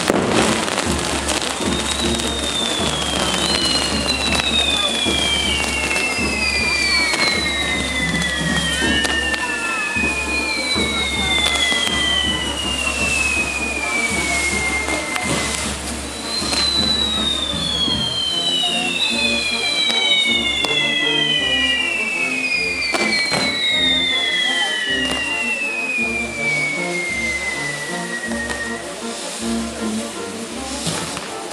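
A castillo firework tower burning: spinning firework wheels crackle and fizz with scattered sharp bangs. About eight long pyrotechnic whistles sound over it, overlapping, each falling slowly in pitch over several seconds.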